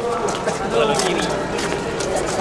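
Several young men's voices talking over one another outdoors, amid general crowd noise.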